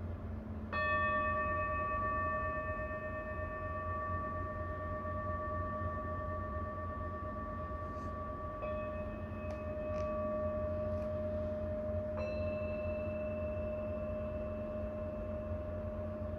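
Tibetan singing bowl held on the palm and struck with a mallet about a second in, ringing with a long, slowly fading tone and several overtones. It is struck twice more, about halfway and near three-quarters through; the last strike brings in a second, slightly lower note.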